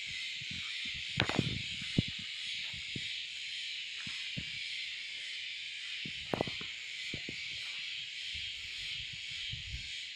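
Leaves and stems of chili plants rustling and snapping as a hand pushes through the branches, in scattered short crackles, the sharpest about a second in, at two seconds and at six seconds. A steady high hiss runs underneath.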